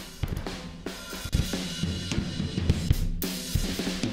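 A recorded drum kit track playing a steady beat of kick, snare and cymbals, heard through the original Airwindows Baxandall EQ plugin.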